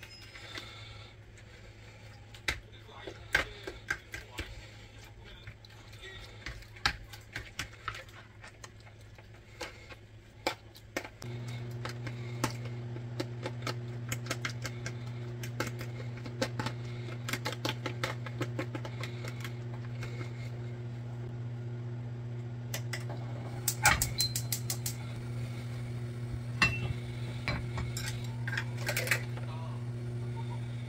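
Metal fork clicking and scraping against a plastic tray as raw beef is stirred together with egg yolks and seasonings. About eleven seconds in, a steady low hum starts and runs on under the clicking.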